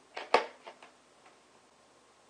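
A few sharp plastic clicks and taps in the first second, the loudest about a third of a second in, as a clear plastic bottle threaded with black poly tube is handled and its cap worked.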